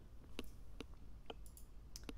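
A few light, sharp clicks, about five spread over two seconds, over quiet room tone.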